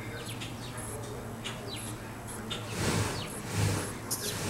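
Small birds chirping now and then in short, quick calls over a steady low hum, with a brief rush of noise about three seconds in.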